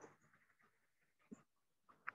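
Near silence: faint room noise with a short soft click about a second and a half in.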